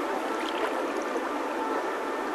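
River water splashing and lapping steadily against a camera held at the surface by a swimmer floating downstream.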